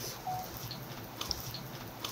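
Quiet indoor room tone with a few faint, brief clicks and ticks and one short faint tone near the start.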